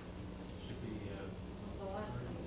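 Faint room tone with a steady low electrical hum and buzz, and a brief faint murmur of a voice near the end.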